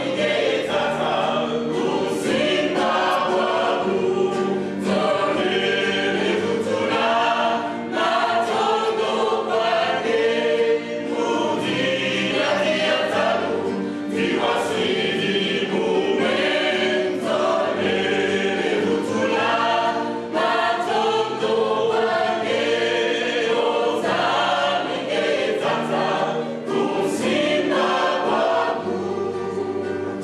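Mixed gospel choir singing an Afro-spiritual song in several voice parts, over low sustained bass notes that shift every second or two.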